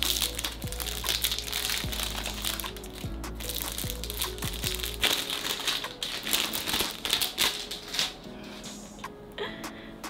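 Cellophane wrapper being crinkled and peeled off a perfume box, a dense run of crackles that thins out over the last few seconds, with soft background music.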